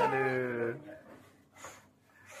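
A young child imitating an animal call: one drawn-out note of about a second at the start, followed by faint short sounds. It is meant to pass for a rat or a cat.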